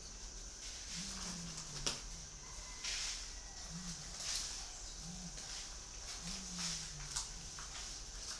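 Spotted dove cooing: low coos, some short and two of them longer drawn-out phrases that dip in pitch. A sharp click about two seconds in.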